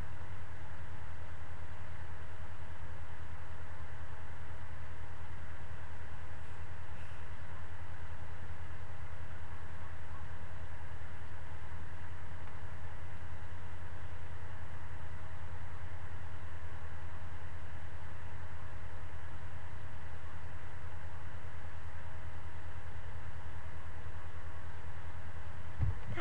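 A steady low hum with a faint thin whine above it, unchanging throughout.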